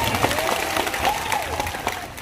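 Crowd applauding: dense hand clapping with a few voices over it, dying down near the end.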